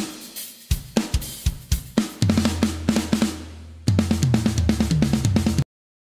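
A drum solo on a large drum kit with triggered kick drums: rapid strokes on the bass drum, snare, toms and cymbals over a low held bass tone. A run of tom strokes steps down in pitch in the second half. The sound cuts off suddenly just before the end.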